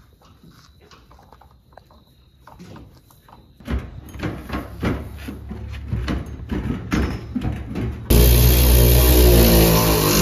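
Cordless ratchet driving a tank-strap bolt under a truck. It starts abruptly about eight seconds in and runs for about three seconds with a steady motor whine, the loudest sound here. Before it there are some seconds of metal knocks and clanks from tools being handled under the truck.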